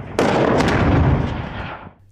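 One shot from a heavy gun: a sudden blast about a fifth of a second in, followed by a long rumbling tail that fades away.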